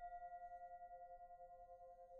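A singing bowl ringing on quietly after being struck, two held tones with a wavering pulse, slowly fading.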